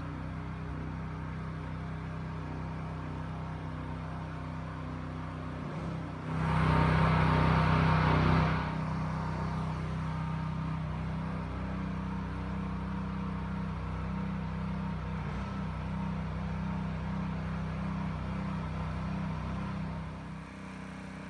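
Gas-powered pressure washer engine running steadily. Partway through it rises to a louder, noisier stretch of about two seconds.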